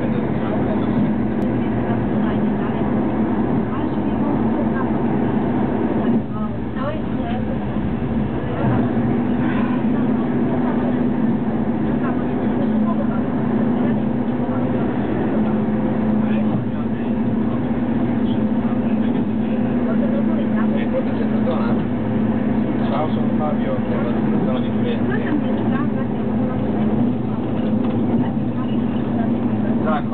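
Steady running noise inside a moving passenger train, with a constant low hum. Indistinct voices of people talking run through it.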